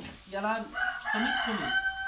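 A rooster crowing once; the call rises into a long note held steady and breaks off near the end.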